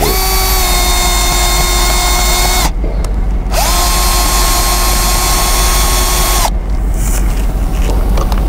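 Cordless drill boring a hole through the tread of a run-flat tyre to puncture it. It runs at a steady pitch in two stretches of about three seconds each, with a short pause between.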